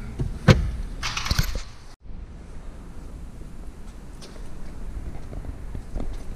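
Handling noise inside a car: a sharp click about half a second in and a brief rustle a second later, then, after an abrupt cut, a low steady background noise.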